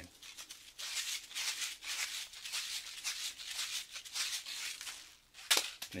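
A small accessory packet from a guitar gig bag shaken in the hand like a shaker, giving a dry rattle in an uneven rhythm of short strokes. One louder stroke comes near the end.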